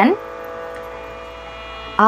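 A steady background drone of several held tones, much quieter than the voice, heard on its own in a pause in the speech.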